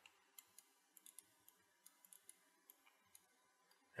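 Near silence broken by a dozen or so faint, irregularly spaced computer mouse clicks.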